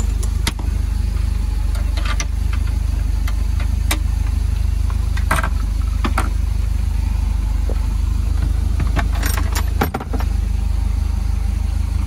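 180-horsepower MerCruiser inboard engine idling steadily, running out of the water on a flushing hose. Several short sharp clicks and knocks, the sharpest about five seconds in, as a bungee-strap hook and a wooden cabin door with its latch are handled.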